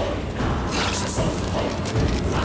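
Suspense sound effects in a horror soundtrack: a steady low rumble under a run of repeated ratchet-like rattling clicks.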